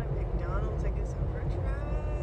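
Steady low rumble of a car heard from inside the cabin, with a woman's voice over it.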